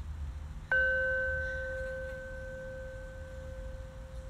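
Small metal singing bowl held on the palm, struck once with a wooden striker about a second in. It rings with a steady low tone and a clear higher overtone, both slowly fading.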